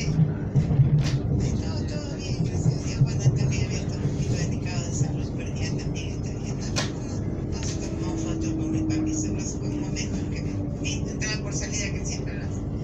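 Running noise heard inside an electric commuter train carriage at speed: a steady low rumble from the wheels on the track, with a couple of sharp clicks. Indistinct passenger voices are heard over it.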